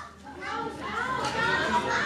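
Several children's voices chattering and playing at once, several overlapping, picking up about half a second in.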